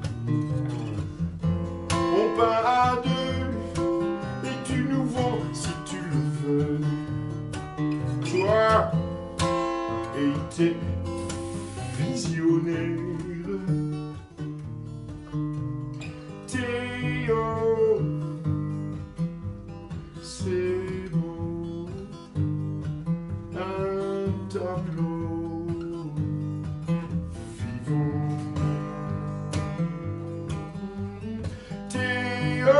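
Acoustic guitar played, strummed and picked, with a man's voice singing over it in places.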